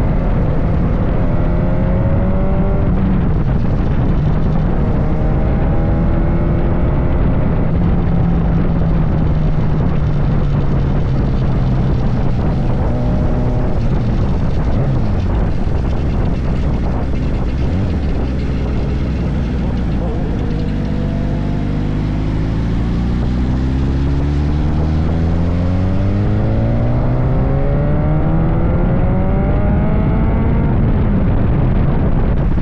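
Sport motorcycle engines running on the road over wind rushing on the microphone. The engine note rises briefly at first and drops through the middle as the bikes ease off. Near the end it climbs steadily in a long pull.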